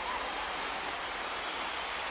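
A steady, even hiss of noise like light rain, with no clear rhythm or tone.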